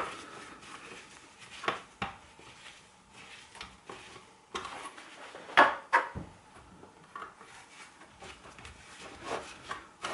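Scattered small clicks and knocks from a screwdriver and gloved hands handling the plastic pressure relief valve and housing of an electric shower, the loudest about five and a half seconds in.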